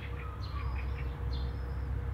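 Faint high bird chirps, a few short calls, over a steady low background rumble.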